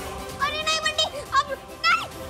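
A child's high-pitched squeals in three short bursts, with background music playing low underneath.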